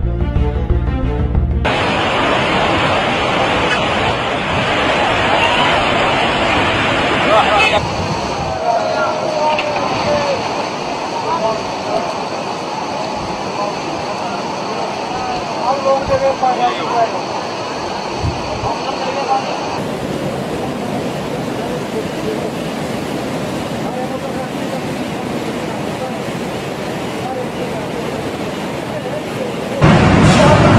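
Rushing floodwater: a steady, noisy rush of fast-flowing muddy water, changing abruptly about two, eight and twenty seconds in as one clip gives way to the next. Voices call out faintly in the middle stretch, and music plays briefly at the start.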